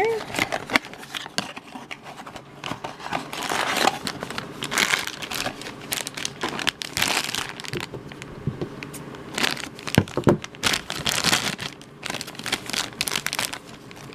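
Thin black plastic bag crinkling and crackling in the hands as it is worked open, in irregular bursts.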